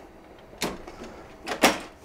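Copier document feeder being shut and pressed down: two short plastic clunks about a second apart, the second louder.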